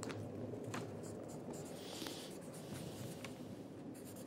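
Faint scratching of a pen writing on paper, with a few light clicks and rustles.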